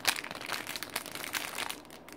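Clear plastic retail bag crinkling as it is handled, a dense crackle that starts sharply and dies away after about a second and a half.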